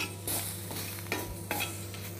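Metal spatula scraping and turning dried red chillies and curry leaves on a tawa, with a faint sizzle; the flame is off and they are dry-roasting on the pan's leftover heat.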